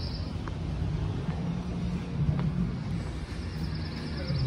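Steady low rumble of outdoor city background noise, with a few faint clicks.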